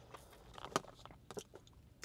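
Faint mouth sounds of sipping a thick milkshake through a straw and tasting it: a few small lip smacks and clicks.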